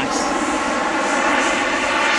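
Model jet's Swiwin 80-newton kerosene turbine running at full throttle as the HSD T-45 flies overhead, an even jet rush with faint steady tones through it.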